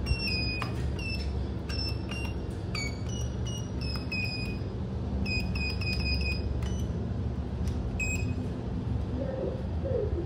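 Lift car operating-panel floor buttons beeping as they are pressed one after another: about fifteen short, high beeps at irregular spacing, several in quick runs, over a steady low hum.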